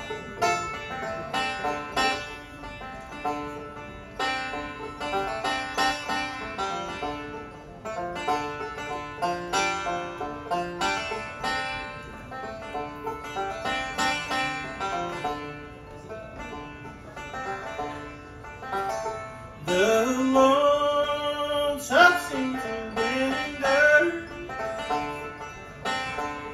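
Bluegrass band playing an instrumental intro, led by five-string banjo over acoustic guitars and a resonator guitar. Near the end the playing gets louder, with notes that slide up in pitch.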